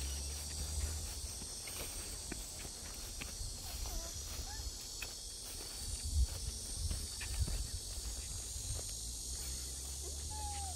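A steady high insect buzz in summer heat, with footsteps on grass and a dirt path and a few soft knocks, the loudest about six seconds in, over a low rumble.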